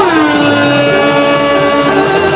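Electronic dance music from a DJ set: a sustained synth note that slides down in pitch at the start and then holds, over a pulsing bass line.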